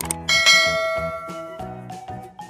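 A bell-like chime struck once about a quarter second in, ringing and fading over a second or so, over a bouncy children's jingle with a steady beat.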